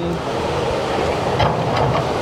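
Steady rushing noise of wind and breaking surf, with a low rumble and a few faint ticks about one and a half seconds in.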